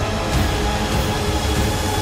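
Loud movie-trailer sound: a dense, steady rumble of effects with held music tones beneath it.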